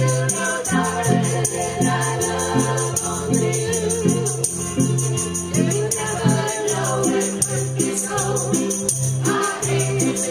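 Amateur string band playing live through PA speakers: fiddles, ukuleles and guitars strummed to a steady beat over a repeating bass line, with the group singing together.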